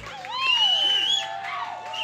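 Audience cheering and whooping, with a high whistle-like cry, as the band's last sustained low note cuts off at the very start.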